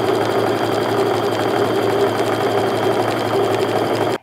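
Baby Lock sewing machine running steadily at a constant speed, stitching a long straight quarter-inch seam through quilting cotton strips.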